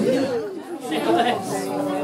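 Chatter of a crowd of people talking at once, several voices overlapping.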